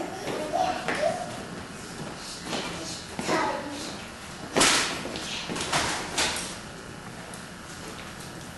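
Small children's voices and scattered light knocks and shuffles on a wooden floor, with one sharp smack, like a clap or slap, about four and a half seconds in.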